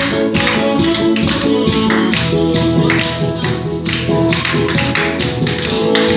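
Tenor saxophone playing a held, slow melody over an amplified backing track with a steady drum beat, about two beats a second.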